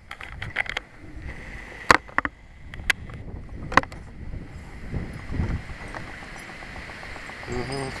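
Uneven low rumble of wind on the microphone, with a few sharp clicks of handling: a cluster in the first second, then single clicks about two, three and four seconds in. The tiller's engine is not running.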